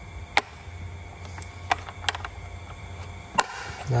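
A tool case being shut and its latches snapped closed: about five sharp clicks, the loudest early on and near the end.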